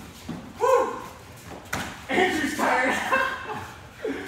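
People's voices calling out in a large, echoing gym hall: a loud call about half a second in and a longer stretch of voice from about two seconds. A couple of short knocks come just before it.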